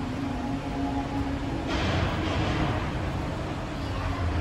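Indoor parking-garage background: a steady low hum, with a rushing noise that swells about two seconds in.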